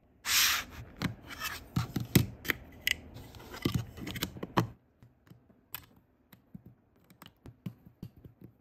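Plastic LEGO bricks being handled and pressed together by hand: a short rustling hiss at the start, then a dense run of rubbing, scraping and clicking for about four and a half seconds, followed by sparser single clicks as bricks snap onto the stack.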